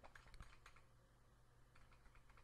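Faint computer keyboard keystrokes: a quick run of clicks in the first second and a couple more near the end.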